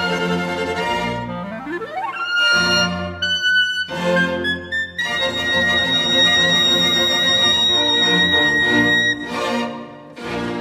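Solo clarinet with string orchestra playing the closing bars of a piece: quick rising runs, a long high note held for about four seconds, then a short final chord that cuts off at the end.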